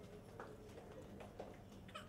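Near silence: faint background hum with a few faint, soft ticks.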